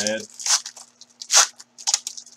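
Foil trading-card pack wrapper being torn open and crinkled by hand: a few short tearing rustles, the loudest about one and a half seconds in.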